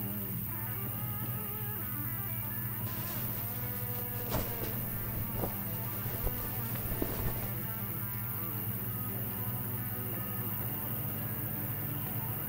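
Background music with sustained tones and a plucked-string sound, with a few faint clicks in the middle.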